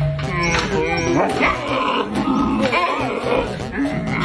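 A giant panda giving a series of wavering, pitched calls over background music.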